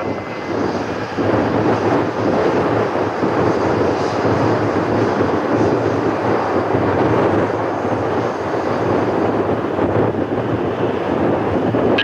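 Boeing 787 Dreamliner's Rolls-Royce Trent 1000 jet engines running at taxi power as the airliner rolls past close by: a steady rush with a low hum under it, a little louder from about a second in.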